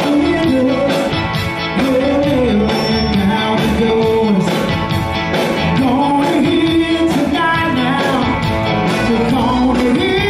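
Live band playing an upbeat Tex-Mex rock song on accordion, electric guitars, bass and drums.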